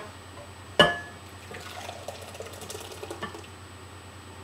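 A sharp clink about a second in, then thin green blended salsa of tomatillos, greens and broth pouring from a blender jar into a glass bowl.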